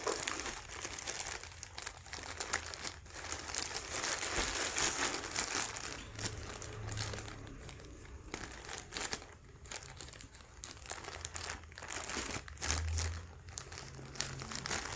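Plastic courier mailer bag crinkling and rustling as it is handled and pulled open by hand, loudest about halfway through.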